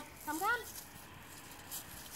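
A woman's voice calling a dog, "come, come", followed by faint, brief rustling, like steps in dry fallen leaves.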